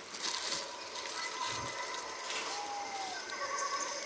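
Paper burger wrapper crinkling as it is peeled back, mostly in the first second, over faint pitched sounds that include a short gliding tone near the middle.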